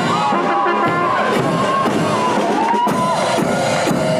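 Brass band playing while marching, with tuba, horns and bass drum beats, and a crowd cheering over the music.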